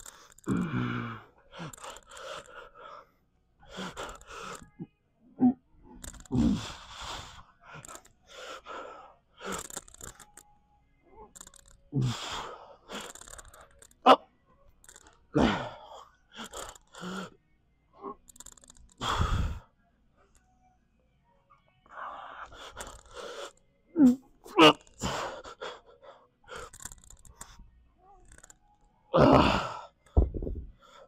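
A man breathing hard, with forceful exhalations and gasps every second or two, while straining through a set of seated dumbbell lateral raises. There is one sharp knock about 14 seconds in.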